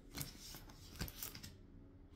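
A deck of tarot cards being shuffled by hand: faint, short card snaps, the clearest near the start and about a second in.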